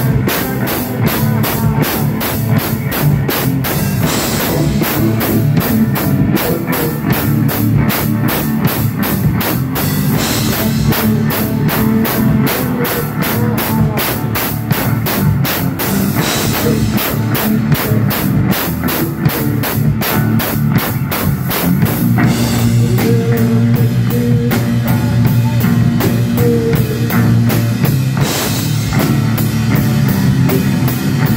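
Live rock band playing: drum kit with fast, steady strokes under electric bass. About 22 seconds in, the low notes grow heavier and more sustained.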